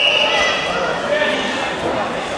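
Shrill, drawn-out shouting from the sidelines of a wrestling bout, echoing in a large sports hall.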